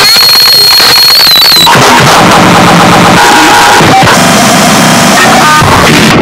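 Loud, distorted electronic noise music: a dense wall of harsh noise at full level. A steady high whine holds for the first couple of seconds, then wobbles and drops out, and brief squealing tones cut through midway.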